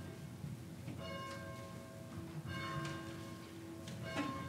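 Church bell tolling slowly, one stroke about every second and a half, each stroke ringing on as it fades.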